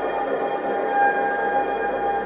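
Slow music: an electric violin holding one long high note, slightly wavering, over a soft sustained background.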